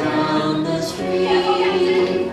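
Choral music: several voices singing held notes.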